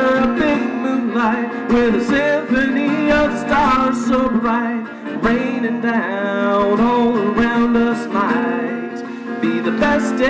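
A man singing a slow song while strumming chords on a steel-string dreadnought acoustic guitar.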